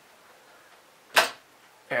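A single sharp snap about a second in, as a part of the hand-built panning rig's gear and bearing frame is pressed into place by hand.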